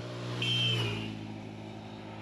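A motor vehicle passing close by, its engine loudest about half a second in with a brief high whine, then fading away.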